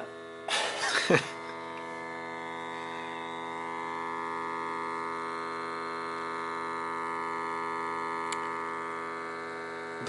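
A steady electrical hum with many overtones, holding one pitch throughout. A brief louder noise breaks in during the first second, and a single faint click comes near the end.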